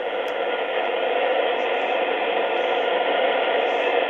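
Shortwave receiver in AM mode giving out steady static hiss, with no programme audio on the tuned frequency, the sound cut off above the treble.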